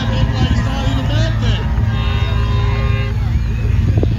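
Tow truck engine running under load as it drags a pickup backward through deep sand, a steady low rumble. Crowd voices are heard over it, and a steady tone sounds for about a second midway.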